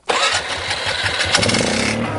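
Polaris ATV engine running, cutting in abruptly at full loudness, as the four-wheeler pulls forward.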